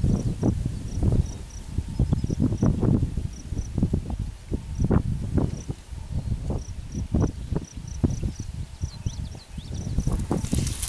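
Wind buffeting the microphone in low, irregular rumbling gusts, over a run of short, high insect chirps repeated unevenly about twice a second.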